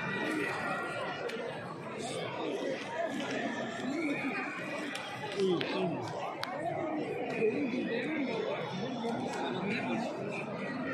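Indistinct chatter of a large crowd of visitors talking at once, many overlapping voices in a large domed stone hall.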